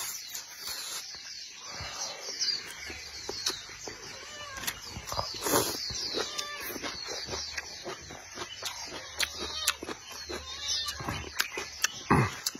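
Close-miked eating: a person chewing and slurping shrimp and leafy greens, with many sharp wet mouth clicks and smacks. Small birds chirp repeatedly in the background.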